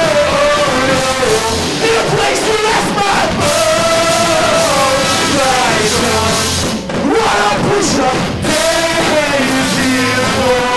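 A live rock band playing a song, with trumpet, violin, melodica, electric guitar and drums, and a male singer at the microphone.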